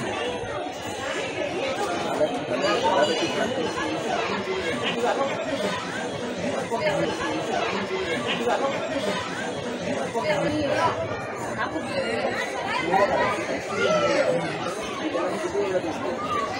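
Many people chatting at once: overlapping conversations from several groups, a steady hubbub of voices.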